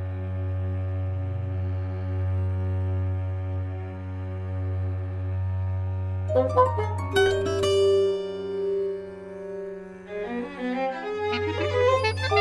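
Contemporary chamber-orchestra music: a sustained low bowed-string drone from cello and double bass, joined about six seconds in by a flurry of sharp struck and plucked notes and a held higher tone.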